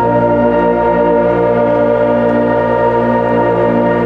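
Student orchestra of brass, woodwinds and bassoons holding one loud, full chord, with some lower parts moving underneath; it is the closing chord of the piece.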